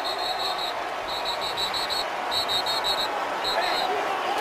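Stadium crowd noise, with a referee's whistle blown in rapid short blasts in four bursts: officials whistling the play dead as a post-play scuffle breaks out.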